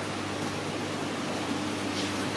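Steady hiss with a constant low hum: aquarium pumps and filters running in the background.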